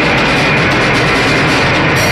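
Loud live band music with a drum kit and cymbals being played.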